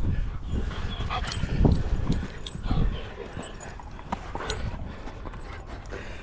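Dogs close to the microphone making short vocal sounds, over a low rumble of wind on the microphone that is strongest at the start, with scattered sharp clicks.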